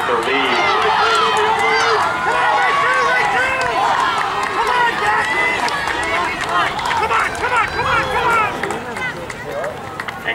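Spectators and teammates at a track meet shouting and cheering runners on, several voices yelling over each other, easing off somewhat near the end.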